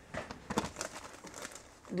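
Light rustling and handling noise with a few small sharp knocks, the loudest about half a second in, as objects are reached for and picked up.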